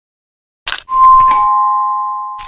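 Two-note 'ding-dong' chime like a doorbell: a higher note about a second in, then a lower one, both ringing on and slowly fading, after a short rustle.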